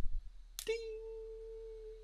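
A low thump right at the start. About two-thirds of a second in comes a single bell-like ding that rings on as a steady pure tone for over a second, the lone note of the orchestra's triangle player.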